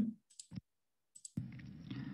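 A few faint, short computer mouse clicks in the first half, then a low steady hiss comes in a little past halfway as a recorded video's sound starts playing.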